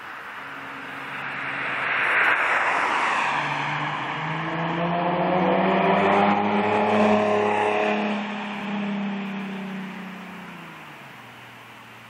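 Infiniti G37x's 3.7-litre V6 with a Fast Intentions cat-back exhaust and resonated high-flow cats, driving past. The exhaust note climbs as the car approaches, is loudest in the middle, then drops in pitch and fades as it goes away.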